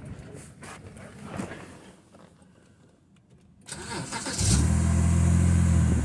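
BMW N52 straight-six petrol engine cranked by the starter and catching almost at once, about two-thirds of the way in, then running steadily at idle.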